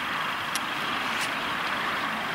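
Steady rushing background noise of distant vehicles, with a few faint clicks.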